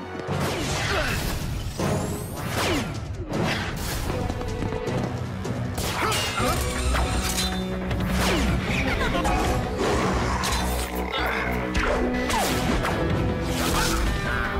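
Cartoon action music with steady low notes, under a run of fight sound effects: many sudden hits and crashes, and energy-blast bursts as red slug shots strike.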